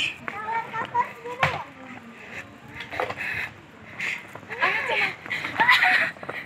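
Children's voices calling and chattering, not clearly worded, with a few sharp knocks in between.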